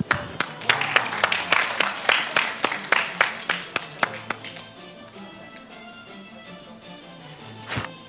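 Background music, with an audience clapping along in rhythm, about three to four claps a second, for the first four seconds or so. After that the music plays on alone until a single sharp hit near the end.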